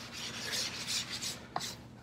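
Hands brushing and sliding quilting fabric over batting to smooth out lumps between the layers: a soft rustling swish in a few swells, with a small click about one and a half seconds in.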